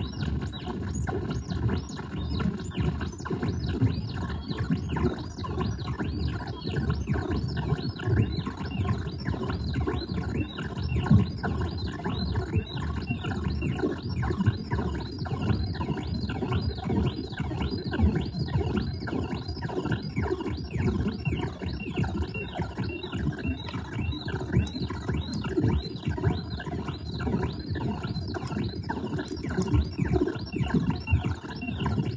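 No-input feedback loop through a chain of guitar effects pedals (Hotone tremolo, Boss SL-2 slicer, Alexander Syntax Error): a dense, unbroken electronic noise texture, heavy in the low end, with rapid stuttering chirps and glitches over it.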